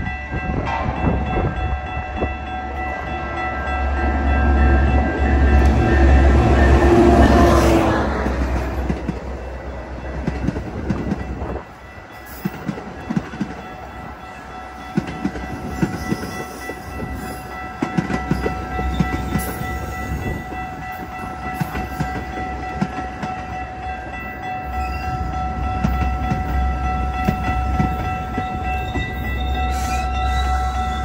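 Metra diesel commuter train running through the station: a steady whine and deep rumble that swell a few seconds in, drop off suddenly about twelve seconds in, and build again near the end, with scattered clicks between.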